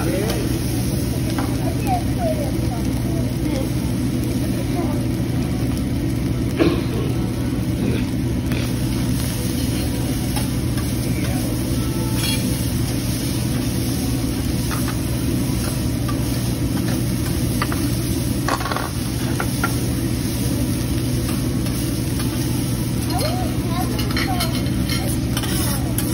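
Fried rice sizzling on a steel teppanyaki flat-top griddle while a metal spatula scrapes and flips it, with occasional taps of the spatula on the steel, the sharpest about seven seconds in, over a steady low hum.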